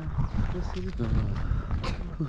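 Wind rumbling on the microphone, with faint talking in the background.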